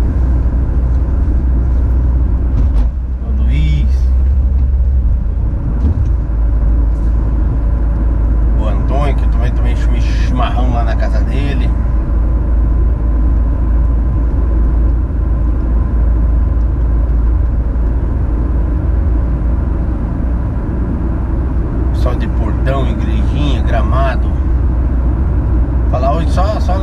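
Steady engine and tyre rumble heard from inside the cabin of a vehicle cruising along a road.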